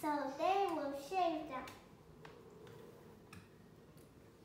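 A child's voice speaking in a rising-and-falling, sing-song way for about a second and a half, then a couple of faint clicks.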